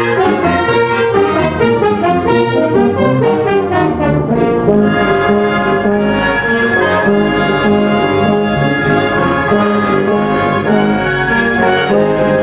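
A concert band plays under a conductor, the brass carrying held notes and chords that change every half second or so, at a steady, full level.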